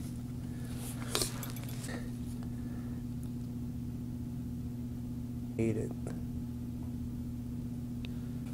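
A steady low hum of room noise, with a light click about a second in and a short hummed vocal sound a little past halfway.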